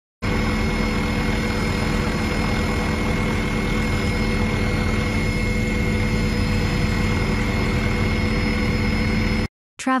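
Steady engine drone with a constant high whine, as heard aboard a helicopter filming from overhead; it cuts off suddenly near the end.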